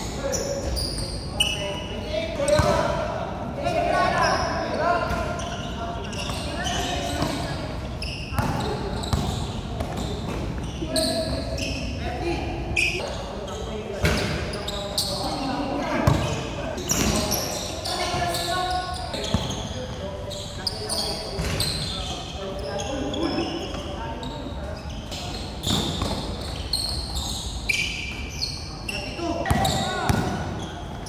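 Basketball game in play: a basketball bouncing and thudding on a hard court floor, with players' voices calling out over it.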